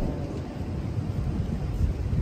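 Wind buffeting a phone microphone outdoors: a low, unsteady rumble with no clear tone.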